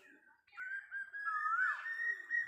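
A high whistled tone starting about half a second in, wavering and slowly rising in pitch, with a quick swoop up and down about halfway through.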